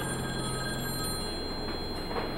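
Landline telephone ringing: one long ring that stops near the end.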